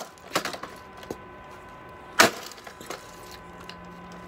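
A plastic Yonanas dessert maker being smashed apart: a couple of sharp cracking knocks about half a second in, then one loud crack a little after two seconds, with a few lighter clicks after it.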